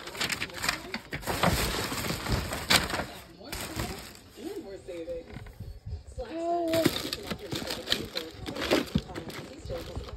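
Handling noise of plastic household items: rustling and knocks as a bag and clear plastic containers are picked up and moved, with a few short wordless voice sounds about halfway through.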